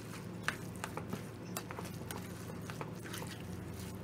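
A utensil stirring and scooping rice and tomato sauce in a pan: soft wet squishing with light clicks against the pan every half second or so, over a steady low hum.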